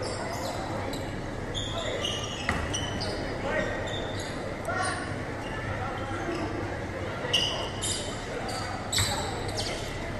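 A basketball bouncing on a hardwood gym floor, with a few sharp thuds, the loudest about seven and nine seconds in. Short high squeaks from sneakers on the court and people's voices sound through the echoing gym.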